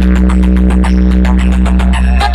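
Electronic dance music blasted through a huge stacked DJ speaker box system, with a heavy bass note held throughout and a fast, even beat of clicking hits on top.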